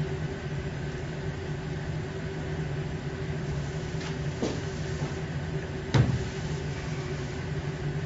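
Steady low room hum, like ventilation or air conditioning, with two short knocks, the second and louder one about six seconds in.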